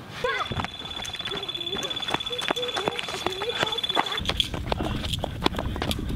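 Electronic bite alarm on a fishing rod sounding one steady, high, fast-pulsing tone for about four seconds before cutting off, the signal that a fish has taken the bait. Excited voices and running footsteps overlap it, and a low rumble on the microphone follows once it stops.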